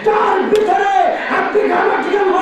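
A man's voice chanting loudly in drawn-out, melodic, wavering phrases through a public-address system, in the style of a sermon's sung religious refrain.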